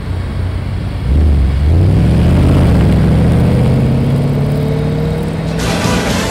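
Jaguar F-Pace SVR's supercharged 5.0-litre V8 accelerating hard, its pitch climbing steadily for several seconds. Near the end a sudden burst of noise from a logo sting cuts in.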